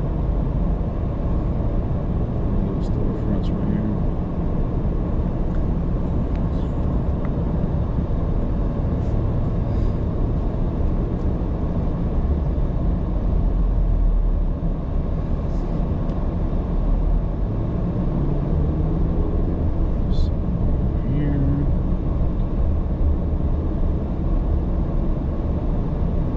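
Steady low rumble of a car's engine and tyres on the road, heard from inside the cabin while driving at town speed.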